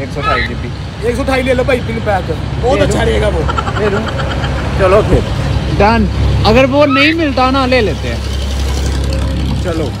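Men's voices talking over a steady low rumble of a nearby idling vehicle engine.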